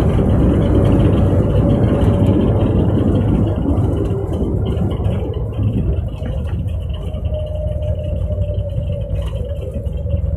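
Airliner landing rollout heard from inside the cabin: loud engine and runway rumble that dies away as the plane slows. A steady whine comes in about six seconds in.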